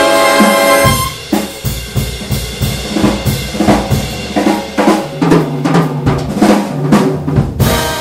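Jazz drum kit solo break: a held big band brass chord cuts off about a second in, then the drums play alone in a busy run of strokes. The full band comes back in just before the end.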